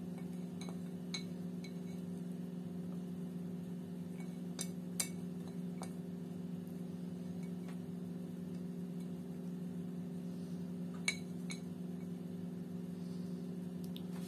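Steady low hum, with a few faint, light clinks scattered through it, about a second apart early on and again near eleven seconds in.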